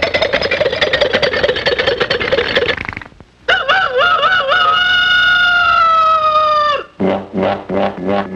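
Cartoon jalopy sound effect: a rapid putt-putting engine with a wobbling pitch for about three seconds. After a brief pause, a warbling tone settles into a long, slowly falling note, and a few short sputters follow near the end.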